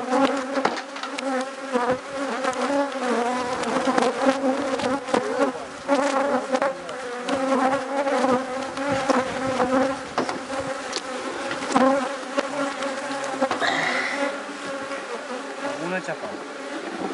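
Many honeybees buzzing close around an opened hive, a steady drone whose pitch wavers. Scattered clicks and scrapes of a metal hive tool prying at the wooden hive box and frames, with a brief squeak near the end.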